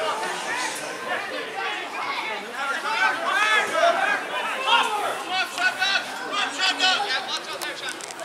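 Several men's voices shouting and calling out over one another during open play in a Gaelic football match, players and sideline spectators, with none of the words clear.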